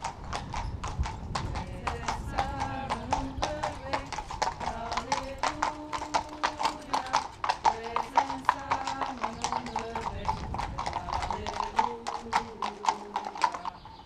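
Horse's hooves clip-clopping at a walk on a paved street as it pulls a carriage, a quick, even run of hoof strikes.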